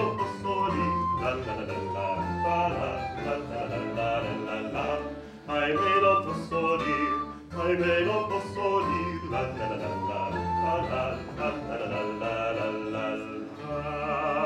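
Baroque-style song: a voice singing over a small early-music ensemble of plucked strings and a bowed bass, with short breaks between phrases about five and seven and a half seconds in.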